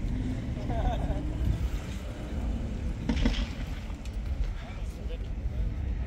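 A steady low rumble with faint background voices, briefly about one second in and again about three seconds in.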